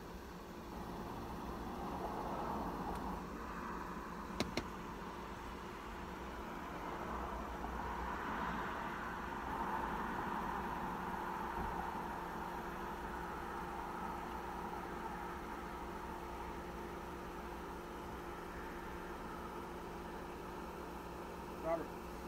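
Quiet ambience inside a parked car: a steady low hum, faint indistinct voices from a conversation outside, and one brief click about four and a half seconds in.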